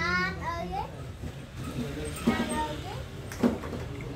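A young child's high voice chattering near the start and again about halfway, with a few sharp clicks of plastic toy blocks being handled.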